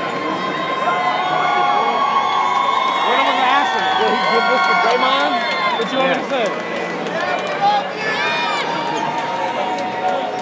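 Arena crowd cheering, with long held shouts and whoops over a babble of many voices.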